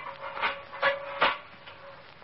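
Three sharp knocks, about 0.4 s apart and growing louder, over a held steady tone that stops just after the third knock.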